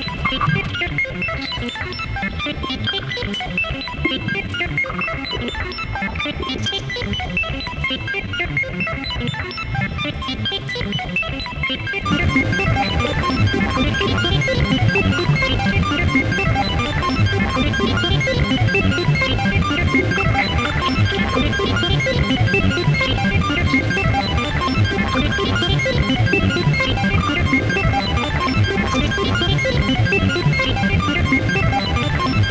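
Electronic music from sequenced analog and modular synthesizers: a dense, fast repeating pattern of short plucked-sounding notes. About twelve seconds in, more parts come in and it becomes louder and fuller, with much more bass.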